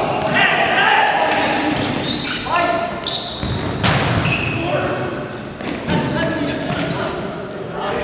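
Players' and spectators' shouts echoing in a sports hall, with sharp thuds of a futsal ball being kicked and bouncing on the court. The loudest crack comes just before four seconds in, as a shot goes in at goal.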